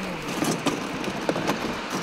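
Road traffic on a snowy, wet highway: vehicles running past with a steady hiss of tyres on the slushy road surface.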